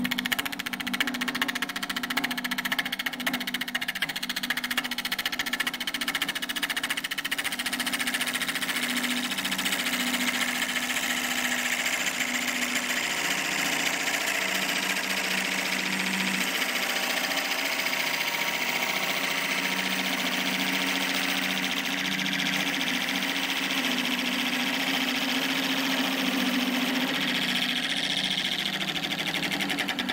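Wood lathe running while a McNaughton Center Saver coring blade cuts steadily into a spinning bowl blank: a continuous shearing, scraping noise of the blade in the wood over the low, steady hum of the lathe.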